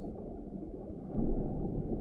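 Low, steady rumbling underwater ambience with no distinct events.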